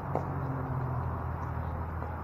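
A single sharp pop of a pickleball paddle striking the ball, just after the start, over a steady low background rumble.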